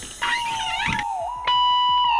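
Background music with a held high note, overlaid for about the first second by a short wavering sound; a second, brighter held tone comes in about one and a half seconds in.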